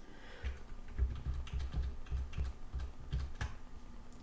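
A computer keyboard's keys pressed in a quick run of about a dozen clicks, each with a low thud, stopping about half a second before the end.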